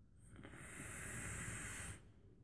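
Hiss of a vape hit: air drawn through a dripping atomizer on a brass single-18650 hybrid mechanical mod as its coil fires. It builds over the first half second, holds steady and cuts off suddenly at the end.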